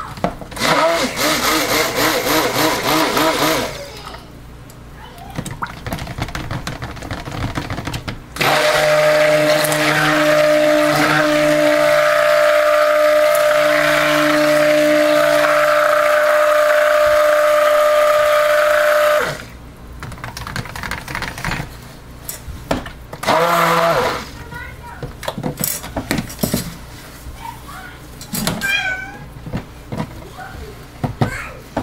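Handheld stick blender running in raw soap batter, blending it to thicken. It runs at a steady pitch for about ten seconds from about eight seconds in, then cuts off sharply. Shorter bursts of sound come before and after this run.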